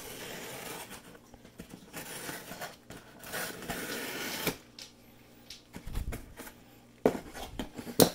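Knife blade slitting packing tape along the seam of a cardboard box, in several scratchy strokes. A low thump comes a little past the middle, and a sharp click about seven seconds in.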